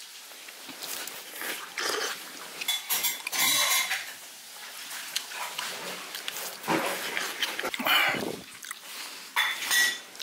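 A person slurping and chewing hand-torn dough soup (sujebi) in several separate bursts, with chopsticks and spoon clinking against the stainless-steel bowl.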